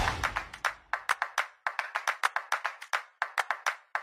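Rhythmic hand clapping: a quick run of sharp, separate claps, about six or seven a second, broken by two short pauses.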